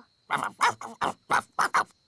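A cartoon ladybird character answering in animal-like gibberish: a quick run of about six short, choppy syllables.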